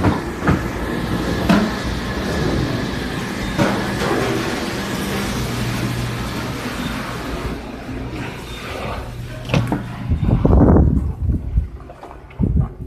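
Steady hum and hiss of commercial kitchen machinery with a few sharp knocks in the first four seconds, as someone walks through carrying a container. In the last two seconds loud, uneven low rumbling buffets the microphone.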